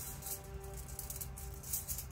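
Soft background music with light, irregular crinkling of a sheet of gold leaf and its paper backing as it is handled and worked at with a steel blade.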